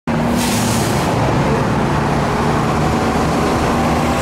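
Road traffic passing: a steady rush of cars and tyre noise, with an engine hum that fades over the first couple of seconds.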